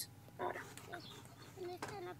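Faint, short children's voices, heard at low level through the playback of the shared video.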